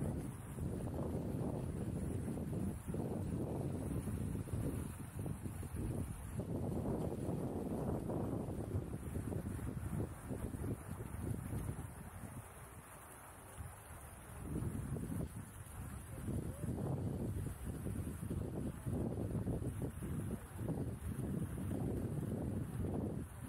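Wind buffeting the microphone of a body-carried 360° camera in uneven gusts, mostly a low rumble, with a short lull a little past the middle.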